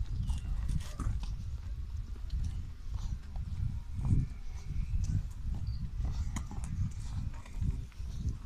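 Footsteps on a dirt path as people walk, over a strong, uneven low rumble and scattered light clicks.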